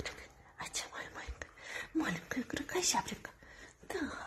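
A person talking softly, close to a whisper, with quiet rustling at first and the voice coming in about halfway through.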